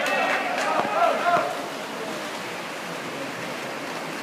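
Voices shouting in a reverberant indoor swimming hall during the first second and a half, over a steady wash of splashing from water polo players swimming.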